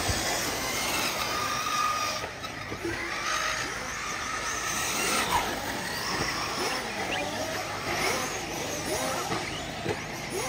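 Several small nitro engines of 1/8-scale RC truggies racing together, their overlapping pitches rising and falling as each revs up and lets off.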